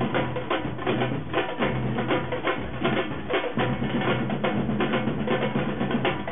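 A drum corps of marching snare drums and bass drums played together with sticks in a steady, continuous rhythm.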